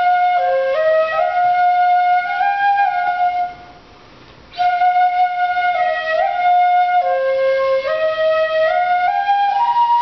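Shinobue, Japanese bamboo transverse flute, playing a slow melody of held notes that step up and down. The line stops for about a second a little before the middle, then resumes.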